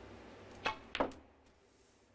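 Snooker cue tip striking the cue ball with a sharp click, then about a third of a second later a louder click as the cue ball hits a red ball.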